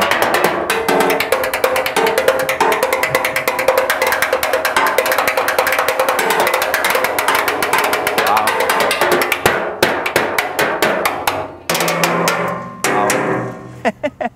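Salvaged scrap car parts struck with a pair of thin sticks in a fast, continuous drum roll, with ringing metallic tones. Near the end the roll breaks into separate strikes, and a lower-pitched object is hit.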